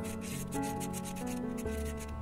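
A marker tip scrubbing against the inside of a small plastic cup in quick repeated strokes, with background music playing throughout.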